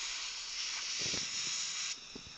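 Dental air syringe blowing a steady hiss of air to dry the teeth under the rubber dam, cutting off suddenly near the end.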